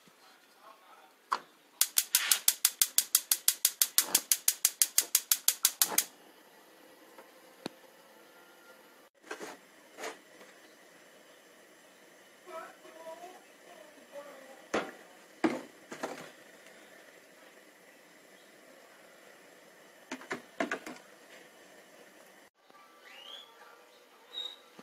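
Gas range burner's spark igniter clicking rapidly, about six clicks a second for some four seconds as the knob is turned, then stopping. Afterwards a few scattered knocks and clunks.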